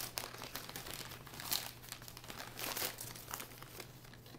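Collapsible cat tunnel crinkling and rustling as a kitten scrambles through it, in irregular bursts that bunch up twice in the middle.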